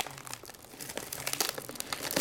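Plastic shrink wrap being pulled and crumpled off a sealed trading-card box: irregular crinkling and crackling with short sharp snaps.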